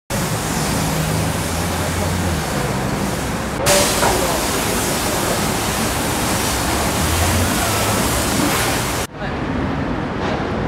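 Pressure-washer spray hissing steadily against a car's bodywork, with a low hum under it in the first couple of seconds. The sound cuts about three and a half seconds in and again near the end, where it turns quieter.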